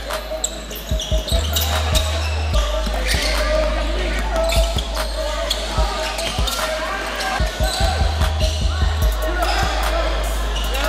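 Live basketball game on a hardwood gym floor: the ball bouncing in repeated sharp knocks, with indistinct voices and music mixed in.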